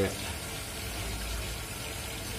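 Steady, even water noise of a marine aquarium's circulating water.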